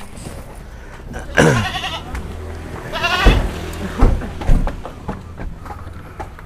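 A farm animal bleating twice: a falling call about one and a half seconds in, then a quavering one around three seconds. A few dull thumps follow the second call.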